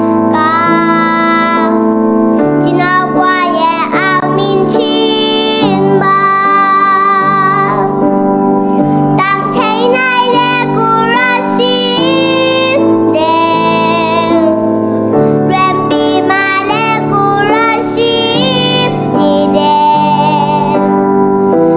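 A young girl singing a Zomi-language song into a headset microphone while accompanying herself on a Yamaha MX88 keyboard with a piano-like sound, playing held chords that change every second or two.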